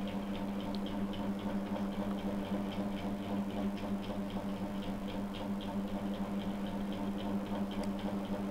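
Steady background hum made of several low tones, with faint regular ticking about three to four times a second.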